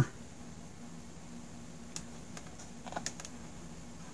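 Light clicks and taps from handling the suction-cup pickup coil and its cable on a desk, a few scattered over the second half, over a faint steady low hum.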